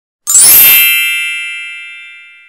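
A single bright chime struck about a quarter second in, with a sparkling shimmer on top that dies away quickly while the main ringing tone fades out slowly: an intro sound effect for a logo reveal.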